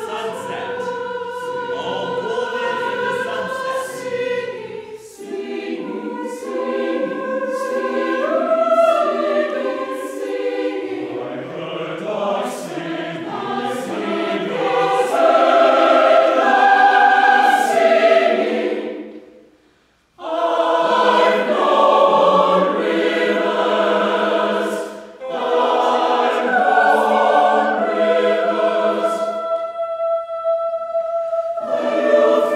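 Mixed chamber choir singing a choral setting in imitative counterpoint. The singing fades away and breaks off briefly about two-thirds of the way through, then comes back at full strength.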